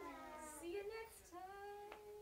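Several children's voices calling faintly in drawn-out, sing-song tones that glide up and down in pitch, as in a long called-out goodbye.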